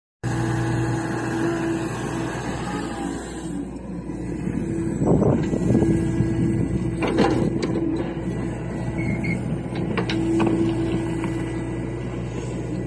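John Deere 60G compact excavator working: its diesel engine and hydraulics run with a steady hum. A few sharp knocks come about five, seven and ten seconds in as the bucket works the soil.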